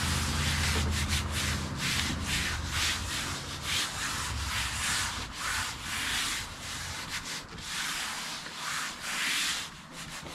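Hands rubbing over marine vinyl laid on contact-cemented plywood, a run of repeated rubbing strokes as air bubbles are pushed out while the cement is still tacky.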